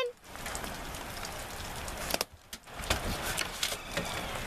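Steady patter of rain, with a few sharp knocks about two and three seconds in.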